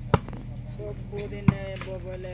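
A volleyball struck twice by bare hands in a rally: two sharp slaps a little over a second apart, with players' voices calling.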